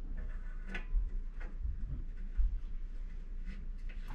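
A few faint metallic ticks and scrapes of an 18 mm wideband O2 sensor being threaded into a freshly drilled and tapped bung on a motorcycle exhaust header.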